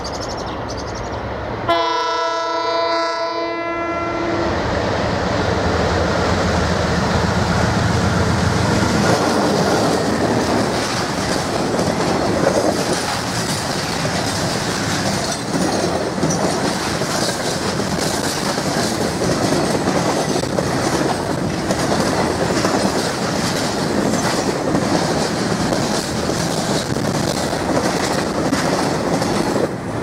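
KiwiRail DXR-class diesel-electric locomotive sounds one long horn blast about two seconds in, then runs past with its engine rumbling. A long string of container freight wagons follows, rattling and clacking over the rail joints for the rest of the time.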